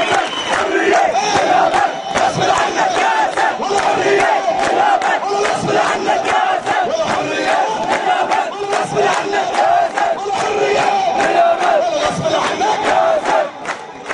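Large crowd of men shouting and chanting together, with hand-clapping throughout.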